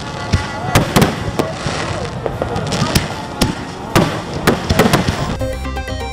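A fireworks display going off: a long run of sharp bangs and crackles at irregular intervals. Music comes in near the end.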